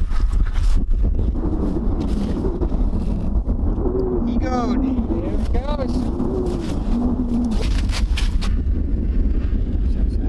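Wind buffeting the microphone on open lake ice. Over it, faint wordless voice sounds come in the middle, with two quick rise-and-fall glides, and there are a few brief handling knocks.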